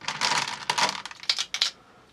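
Glass marbles clinking and clattering against each other and a plastic tub as a hand rummages in and scoops from it, a quick run of small clicks that dies away near the end.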